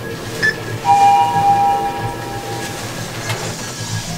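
Elevator arrival chime: a two-tone ding about a second in, the higher tone fading first and the lower one lingering about two seconds.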